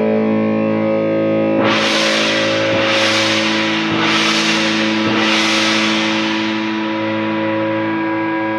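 Distorted electric guitar holding a ringing chord through an effects unit. From about one and a half seconds in, four bright swells of hiss come about a second apart, each fading away.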